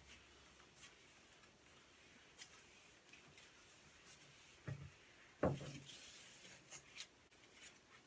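Crumpled newspaper rubbing against a glass mirror in faint wiping strokes, with scattered light ticks and two brief louder sounds a little past halfway.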